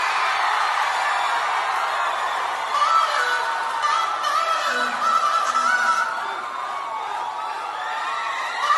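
Electronic song intro: a synthesizer lead plays high, warbling tones that slide up and down in pitch, with no drum beat yet.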